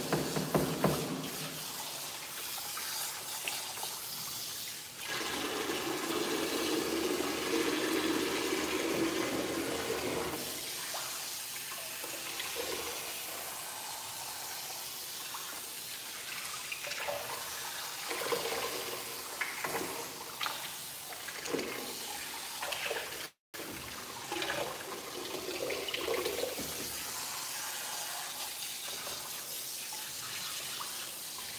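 Water running steadily into a dog-grooming tub as a wet dog is washed and rinsed, with small splashes. There is a fuller rush of water from about five to ten seconds in, and the sound cuts out for an instant a little past two thirds of the way through.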